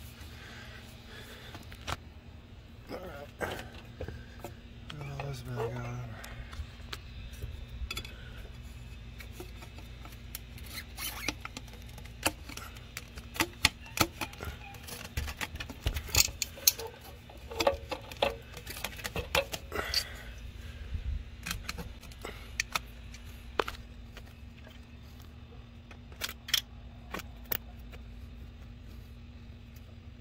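Handling noise in a car's engine bay: scattered clicks and light knocks of hands and the phone against hoses and parts, the sharpest and most frequent in the middle of the stretch, over a steady low hum.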